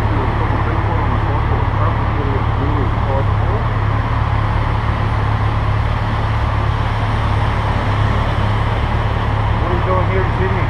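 Steady low rumble of an idling motorcycle engine close by, mixed with passing street traffic, and faint muffled talk a couple of seconds in.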